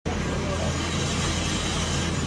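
Steady background rumble with a constant low hum, the general noise of an outdoor worksite.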